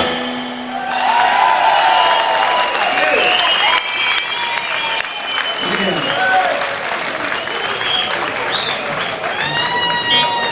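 A rock-and-roll band's music stops. An audience then applauds and cheers, with shouts and voices from the crowd throughout.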